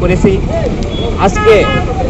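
A man speaking in short phrases over a steady low rumble.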